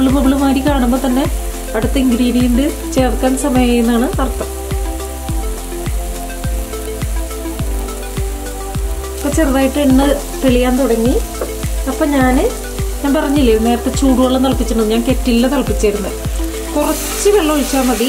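Background music with a steady beat and a melody over a spice masala sizzling in a pan. Near the end the sizzle grows louder as hot water is poured onto the hot masala.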